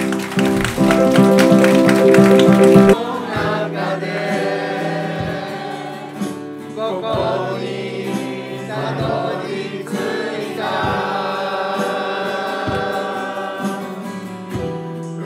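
Acoustic guitar strummed in loud chords. About three seconds in the sound changes abruptly to a group of people singing together to acoustic guitar accompaniment.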